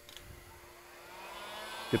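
Handheld heat gun switched on: its fan motor spins up from about half a second in, a whine rising in pitch and growing louder.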